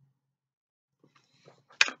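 Near silence for about a second, then faint soft noises and a man's voice starting to speak near the end.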